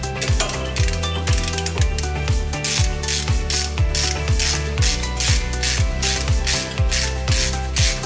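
Hand ratchet clicking rapidly from about three seconds in as it turns an H7 hex bit in a car's front brake caliper guide bolt, over background music with a steady beat.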